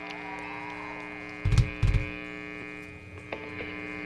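Steady electric hum and buzz from the stage amplifiers and PA between songs, with two loud low thumps about a second and a half and two seconds in.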